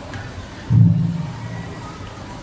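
A handheld microphone being handled: a sudden low, boomy thump through the public-address system about three-quarters of a second in, fading over about half a second, over the low hum and murmur of a large crowd.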